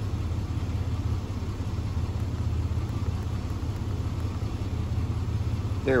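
GMC Jimmy's 4.3-litre V6 idling steadily, a low even hum, with the engine warmed up to operating temperature.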